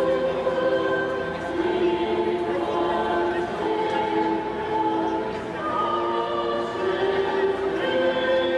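A choir singing long held notes in several voices, the chords changing every second or so.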